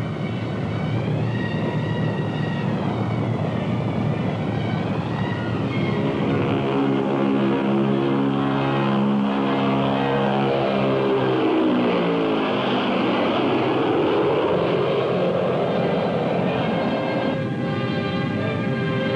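B-36 bomber's engines droning in flight, a dense multi-engine sound whose pitch drops as it passes by about two-thirds of the way through. Orchestral music comes in near the end.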